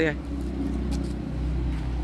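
An engine running with a steady, even low hum.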